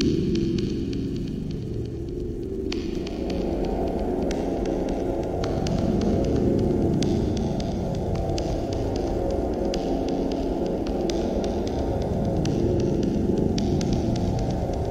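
Dark horror-ambient drone: a low, shifting hum with scattered crackles over it. It grows fuller a few seconds in.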